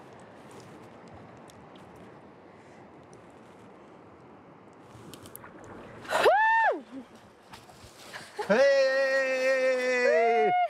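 Quiet, steady wash of shallow river water. About six seconds in comes a short, high whoop that rises and falls, and near the end a long held shout: excited cheering as a salmon is netted.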